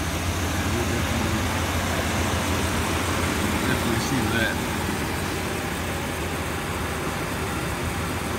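1993 GMC Suburban engine idling steadily with the hood open, a constant low hum.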